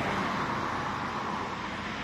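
Steady hum of road traffic: an even noise with no separate events standing out.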